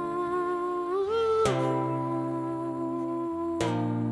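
Live band's guitars playing a slow opening passage: held notes that slide up in pitch about a second in and drop back, with chords struck at about a second and a half and again near the end.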